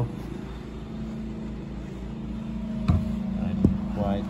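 Steady low machine hum of the lab's background, with a held tone that grows a little louder in the second half. Two short sharp clicks come about three seconds in and again shortly before the end.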